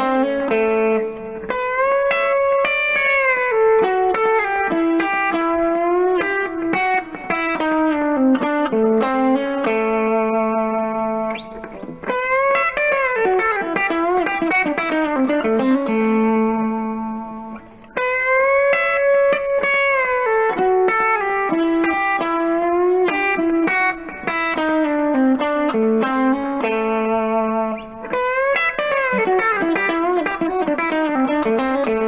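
Telecaster electric guitar playing a country chicken-pickin' lick in A, repeated several times, with string bends that rise and fall in pitch among quick picked notes.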